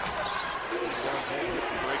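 Broadcast audio of a college basketball game: a basketball being dribbled on a hardwood court over steady arena noise, with a commentator's voice partly heard.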